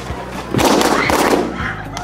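A volley of blue latex balloons bursting in quick succession as they are stomped on, a dense run of loud pops from about half a second to a second and a half in.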